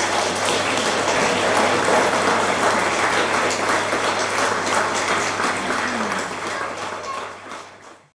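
Audience applauding at the end of a hymn, dying away near the end, over a steady low hum.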